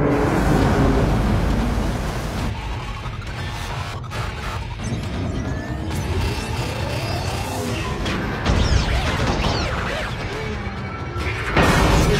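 Film soundtrack: dramatic score over a heavy low rumble, with booming impact effects. A rising sweep comes in around the middle, and a loud hit comes near the end.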